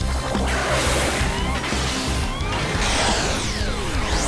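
Action-show soundtrack: dramatic music with whooshing sweeps and crashing mechanical effects as a giant robot locks together, over a steady low bass.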